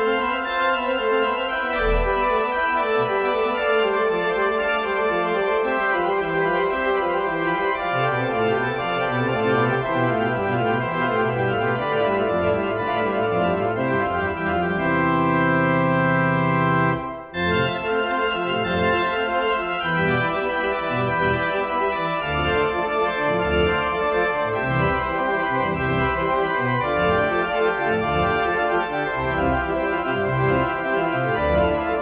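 Pipe organ playing a passacaglia: sustained chords over a repeating harmonic progression, with variations. About halfway through a long chord is held and breaks off briefly, and the playing resumes with a moving pedal bass line.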